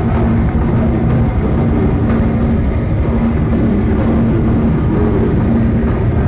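Thrash metal band playing live at full volume, heard from the crowd: distorted electric guitars holding a low note over fast, dense drumming.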